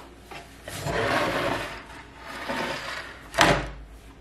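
Barn quilt boards slid across a wooden tabletop: two rubbing scrapes, then a single knock near the end as a board is set down.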